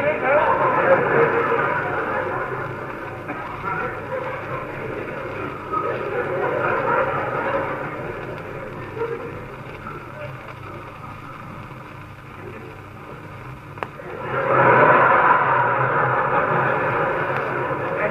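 Theatre audience laughing, heard on an old narrow-band recording. The laughter is loud at first, dies down through the middle and swells up loudly again about fourteen seconds in.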